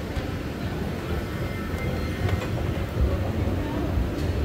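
Shopping-centre ambience: a steady low rumble of building machinery and air with faint indistinct voices and a few light clicks.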